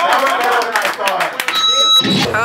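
Young men's voices talking and laughing in a small room, with a few sharp claps, then a steady high-pitched tone for about the last half second that cuts off suddenly.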